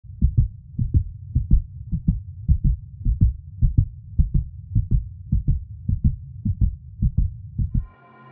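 Heartbeat sound: low, evenly paced double thumps (lub-dub), a little under two a second, stopping just before the end.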